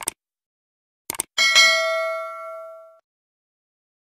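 A few short sharp clicks, then a single struck bell-like ding about a second and a half in that rings on and fades away over about a second and a half.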